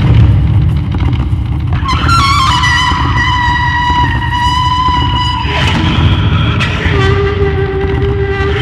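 Daxophone, a bowed wooden blade instrument, playing over a continuous rough low rumble: about two seconds in a wavering tone settles into a held high note lasting some three seconds, and a lower held note comes in near the end.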